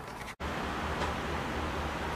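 Steady room noise with a low hum, broken by a split-second dropout shortly after the start.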